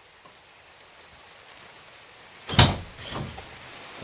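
A single solid clunk of a latch on a 2019 Porsche 911 GT2 RS about two and a half seconds in, followed by a fainter knock about half a second later, as the car is opened to pop its front hood.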